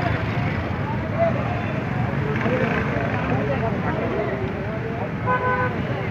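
Crowd of many people talking and calling out at once, a continuous chatter with no single clear voice. About five seconds in, a vehicle horn gives one short steady honk.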